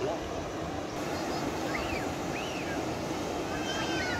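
Steady outdoor wind noise with faint distant voices.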